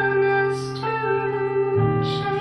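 Ibanez FR320 electric guitar played through a Marshall Valvestate 8240 amp and Zoom G1X Next effects, sustaining notes that glide from one pitch to the next, over a steady low accompaniment.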